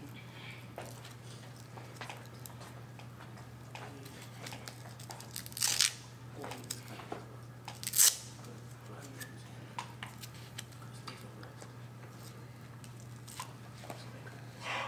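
Hook-and-loop (Velcro) wrist wraps being torn open and pressed shut, with two short loud rips about two seconds apart and small handling clicks, over a steady low hum.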